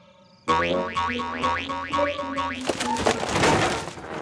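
Cartoon sound effects: a quick run of springy boing notes, about five a second, each dropping in pitch, then a loud whooshing rush near the end.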